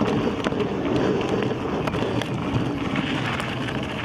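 Electric unicycle riding over a dirt forest trail: steady wind rush on the microphone and tyre noise, with scattered small clicks from grit and stones under the tyre.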